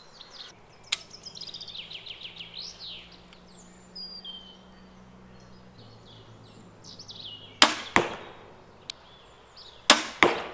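Zubin X340 compound crossbow firing a bolt: two sharp cracks about half a second apart, the shot and what follows it, then another sharp crack near the end.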